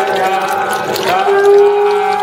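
Voices chanting in worship, then from about a second in a long, steady tone held without wavering.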